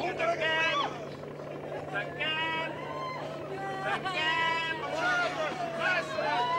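Several voices shouting and crying out over one another during a scuffle, with three loud high-pitched cries: near the start, about two seconds in and about four seconds in. A steady low hum runs underneath.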